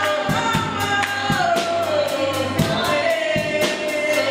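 Live gospel worship music: a woman singing lead in long notes that slide downward, with backing voices, a drum kit keeping the beat and a bass line underneath.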